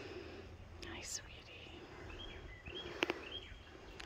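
Quiet outdoor ambience with a bird giving three short arching chirps in the second half and a sharp click just after three seconds.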